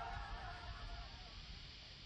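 The tail of a film explosion dying away steadily, a fading haze of noise with a faint held tone under it, as a battle scene's soundtrack fades out.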